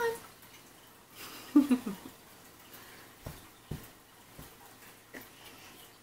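An infant crawling on a blanket-covered floor. A short vocal sound, a grunt or squeal, comes about a second and a half in, then two soft thumps, with a few faint taps in an otherwise quiet room.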